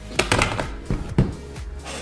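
Clicks and knocks of a plastic prop rifle being handled and set down: a cluster of clatter near the start and a sharper knock a little past a second in. Background music plays underneath.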